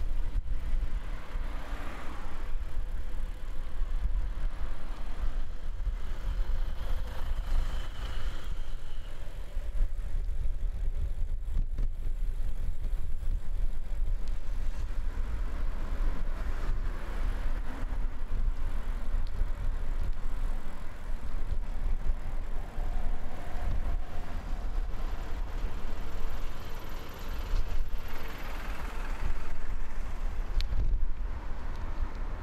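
Road traffic on a two-lane street: cars and a truck driving past, their engine and tyre noise swelling as each goes by, loudest about two seconds in, around eight seconds in and near the end, over a constant low rumble.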